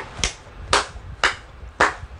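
Slow hand claps, about two a second: a few sharp, evenly spaced claps.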